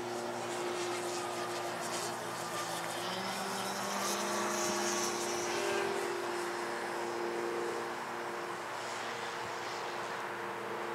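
Radio-control 70-inch Slick aerobatic plane flying overhead, its motor and propeller running steadily. The pitch steps up and down with the throttle through the manoeuvres.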